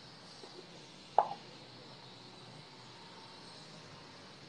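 A man drinking from a plastic cup: one short, sharp pop about a second in, with a fainter one just after, over quiet room hiss.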